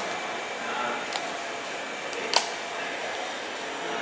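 Café room tone with a steady background hum, broken by a small click about a second in and a sharper plastic click about two and a half seconds in as a plastic straw is pushed through the domed lid of a milkshake cup.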